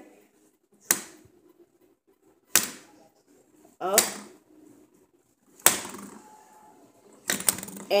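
Five or so sharp plastic clicks and knocks, a second or two apart, each ringing briefly: fidget spinners slowing down and knocking on the glass tabletop.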